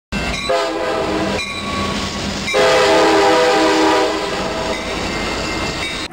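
Passenger train horn sounding two blasts, a short one and then a longer one starting about two and a half seconds in, over the rumble of the train passing close by.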